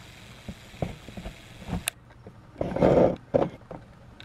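A few soft clicks and knocks, one sharper click just before the midpoint, and a short, louder rustling burst about three seconds in.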